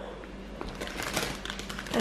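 Faint, irregular light clicks and rustling from hands handling a cardboard drink carton and its plastic screw cap.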